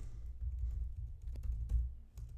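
Computer keyboard being typed on: a scattering of faint key clicks as a terminal command is entered, over a steady low hum.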